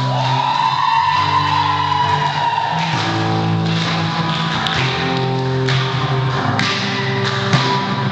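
Live rock band with electric guitar, bass guitar and drums: a long sustained high note bends up and slowly falls over the first few seconds, then the bass and drums come back in underneath with a steady beat.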